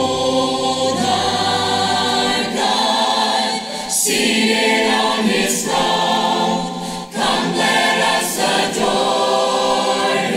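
Choir singing, with a man and a woman singing lead into microphones. The singing is loud and steady, with brief breaks between phrases about three and a half and seven seconds in.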